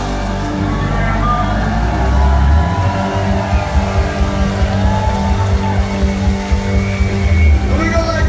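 Live band music played loud through a club PA, heard from inside the crowd: a heavy bass beat with a chord held steady from about three seconds in.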